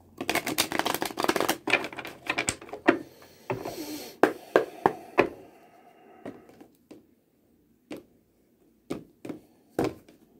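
Tarot cards being shuffled by hand: a quick run of papery clicks for about three seconds, then a handful of single clicks spaced out toward the end.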